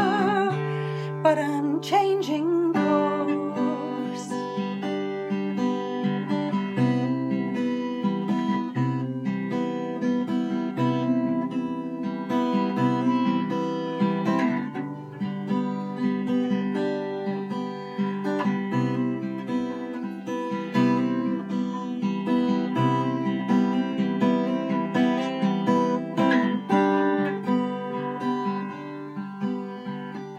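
Acoustic guitar playing an instrumental break of picked and strummed chords, after the last sung note fades out about a second in.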